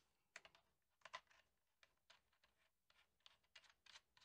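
Near silence with a few faint, scattered clicks as a Deity D4 Duo microphone's shoe mount is fitted onto a camera's cold shoe bracket, the loudest about a second in.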